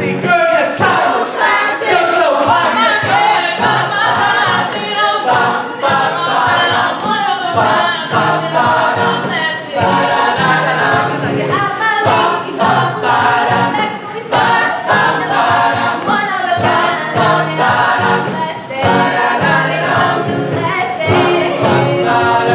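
Mixed-voice a cappella group singing, with a soloist on a microphone carried over the group's backing vocals and a regular low sung bass pulse; the solo is taken by a female voice by about halfway through.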